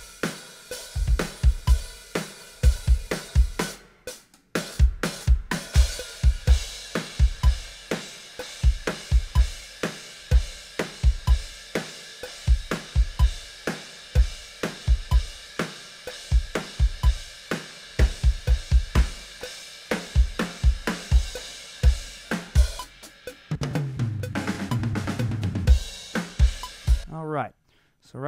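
Playback of a multitracked acoustic drum kit recording, edited and quantized to the grid: kick drum, snare, hi-hat and cymbals in a steady, tight groove with quick kick doubles. There is a brief break about four seconds in, and a denser, lower fill near the end before the playback stops suddenly.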